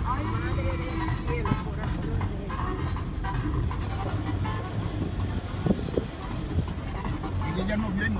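Four-cylinder vehicle engine and tyre rumble heard from inside the cabin, driving up a dirt road, steady throughout. Music and voices play over it.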